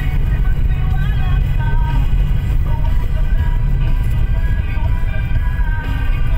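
Inside a moving car: a steady low rumble of engine and road noise, with music and a sung melody playing over it.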